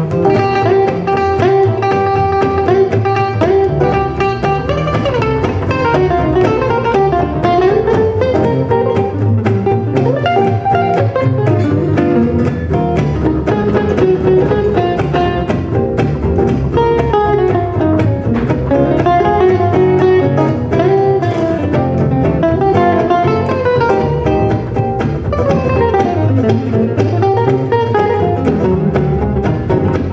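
Live gypsy-jazz (jazz manouche) quartet playing: clarinet carrying a flowing melody over two acoustic guitars and double bass.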